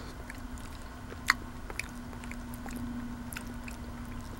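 Close-miked mouth sounds of a person eating a spoonful of semolina porridge with cherries: soft chewing with small wet clicks, and one sharper click about a second in. A faint steady low hum runs underneath.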